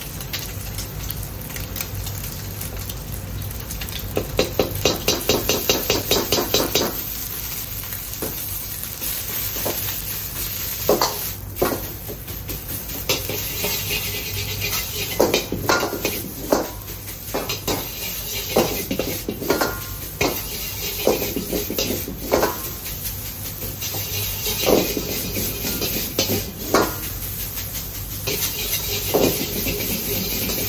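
A metal ladle knocking and scraping in a carbon-steel wok as egg and rice are stir-fried over a gas wok burner, with sizzling. A quick run of rapid taps comes about four seconds in, then irregular clanks of ladle on wok through the rest, over a steady low hum from the burner.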